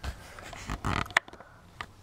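Handling noise from a camera being repositioned: soft rustles and bumps, with a sharp click just after a second in.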